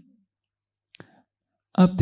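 A pause in a man's speech, almost silent, with a single faint click about a second in; his voice starts again near the end.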